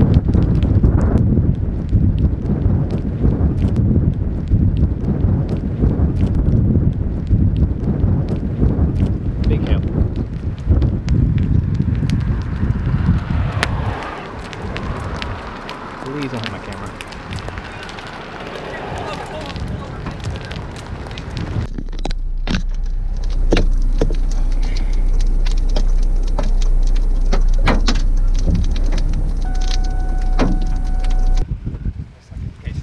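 Gusty wind buffeting the microphone with crackles for about the first half, then easing off. In the last third a vehicle's engine idles with a steady low hum.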